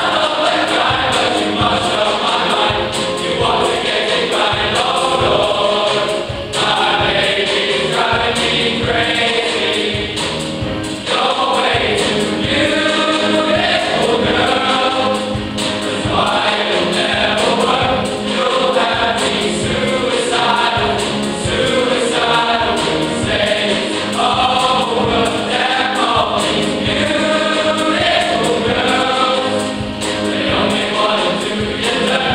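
A choir of teenage boys singing a pop song in parts, continuously and at full voice.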